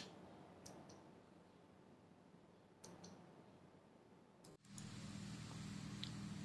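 Near silence with a few faint clicks in the first three seconds, then, about four and a half seconds in, a faint steady low hum of room tone begins.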